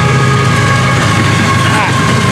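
Florida East Coast Railway GE ES44C4 diesel locomotives passing close by under power. A steady deep engine rumble with several steady high tones over it.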